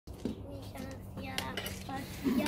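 Metal objects clinking and clattering as they are handled, with a few sharp knocks in the second half, over a low steady hum.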